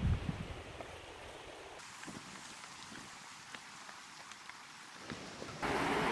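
A faint steady hiss with a few small ticks, then, near the end, the louder even rush of a river running over rocks in rapids starts suddenly.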